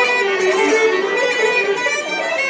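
Three fiddles playing a fast reel together in unison, a quick unbroken run of notes.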